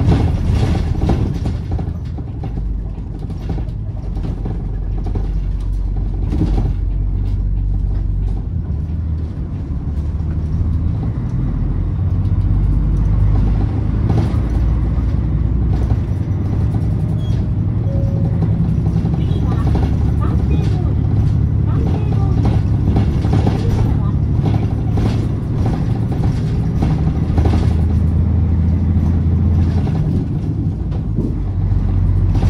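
City bus engine heard from inside the cabin while the bus drives along, a low drone that shifts in pitch as it speeds up and eases off. Frequent rattles and knocks from the cabin run through it.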